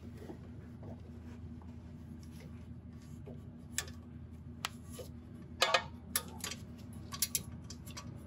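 A few sharp, irregular metallic clicks and clinks of a hand tool working the small 10 mm bolt on a wheel speed sensor bracket, starting about halfway through and bunched toward the end, over a steady low hum.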